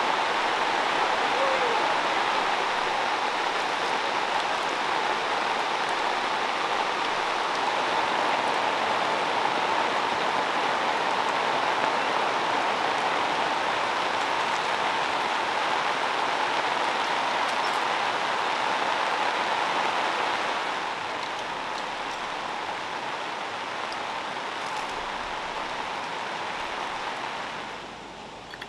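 Heavy rain falling, a steady dense hiss that eases somewhat about twenty seconds in.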